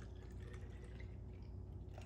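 Faint trickle of milk formula pouring in a thin stream from a glass jar into a plastic baby bottle, over a low steady hum.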